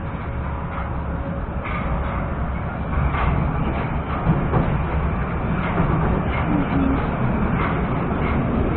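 Moscow metro 'Moskva 2020' train running, heard from inside the car as it pulls out along the station platform; its rumble grows louder about three seconds in.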